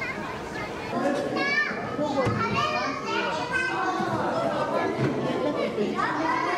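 Several children's voices talking and calling out at once, growing louder about a second in.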